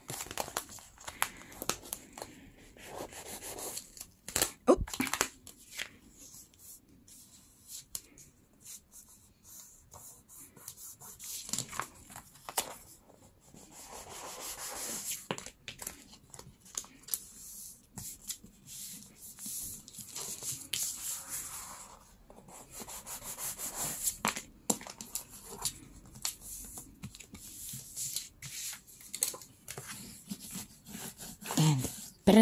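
Paper being folded over chipboard and pressed and rubbed flat by hand: irregular rustling, crinkling and rubbing strokes with scattered light taps and clicks.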